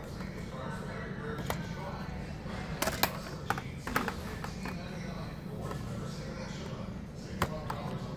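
Plastic blister-pack cards of diecast cars being handled on metal pegboard hooks: sharp clicks and taps, a cluster about three to four seconds in and one more near the end. Under it runs a steady store hum with faint voices in the background.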